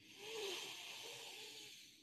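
A faint, breathy exhale close to the microphone, fading away over about a second and a half.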